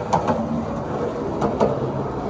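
Skateboard wheels rolling on a concrete floor as the skater approaches, a steady rolling rumble with a few short clicks and knocks from the board.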